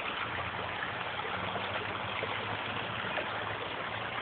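Small forest stream flowing steadily.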